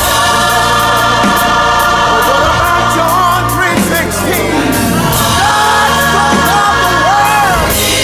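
Soul song with choir-like sung vocals held over a band with bass and a steady beat of cymbal strokes.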